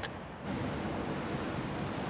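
Steady rushing sea ambience of waves and wind, beginning about half a second in, with a faint low hum underneath.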